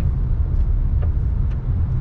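Road and engine noise of a moving car: a steady low rumble, with a few faint clicks.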